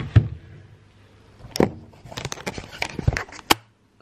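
Handling noise from a wooden-framed print being moved about: a string of knocks and clicks, a pair near the start and a quick cluster later on, before the sound cuts off suddenly.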